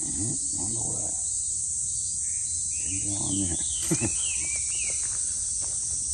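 A steady high-pitched chorus of cicadas in summer trees, with low voices murmuring briefly near the start and about three seconds in, and a single sharp click just before four seconds.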